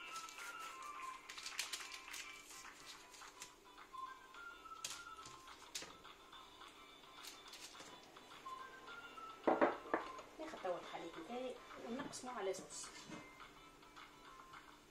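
Background music with a simple melody of stepped, repeating notes. A voice comes in over it about ten seconds in for a few seconds.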